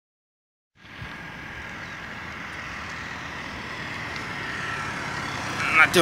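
Highway traffic noise starting suddenly about a second in: a passing car's tyre and engine noise, growing slowly louder.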